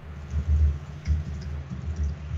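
Computer keyboard typing and clicking, with a few low thuds about half a second, a second and nearly two seconds in.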